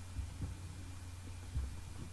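Low steady hum in the background of a quiet home recording, with two soft low thumps, one about half a second in and one near the end.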